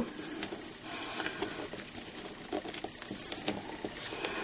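Ribbon being handled and tied around a marker pen: faint, irregular rustling with scattered light ticks.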